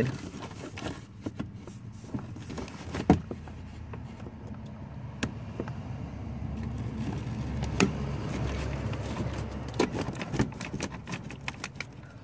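Flat-blade screwdriver prying at a stuck plastic power-window switch housing in a car door panel: a scatter of sharp plastic clicks and light scraping as the clip refuses to release, over a low steady rumble.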